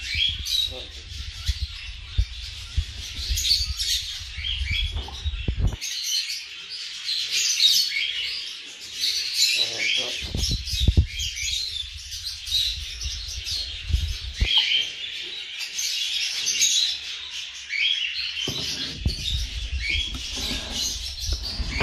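A brood of forpus parrotlet chicks chirping rapidly and continuously in shrill, overlapping calls. A low rumble from the box being handled comes and goes underneath.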